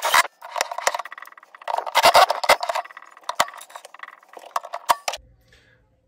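Cordless drill driving screws into a wooden cabinet floor to fasten the metal rail of a pull-out wire organizer, the drill whirring in short spells among sharp clicks and metal clinks. The sound stops about five seconds in.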